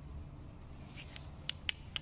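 Light handling noise from a removed piston and connecting rod being turned over in gloved hands, with four short metallic clicks in the second half.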